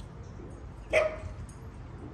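A dog gives a single short bark about a second in.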